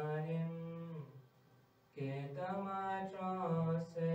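A young man's solo voice chanting a marsiya, a mourning elegy, slowly and without accompaniment into a microphone. A held phrase breaks off after about a second. A longer phrase of drawn-out, slowly wavering notes follows.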